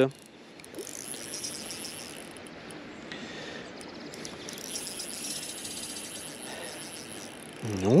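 Small spinning reel whirring steadily as a hooked trout is played on light tackle, the whir brighter through the middle few seconds.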